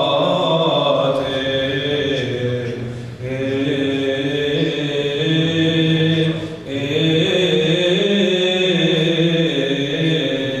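A choir singing Byzantine church chant: a slow melodic line over a steady held low drone (the ison). The singing breaks briefly for breath about three seconds in and again before seven seconds.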